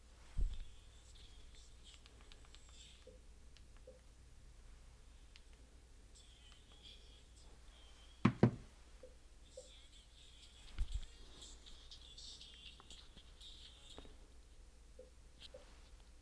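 Hands handling small objects: a soft knock about half a second in, a sharp double knock about eight seconds in and another knock near eleven seconds, with faint rustling between.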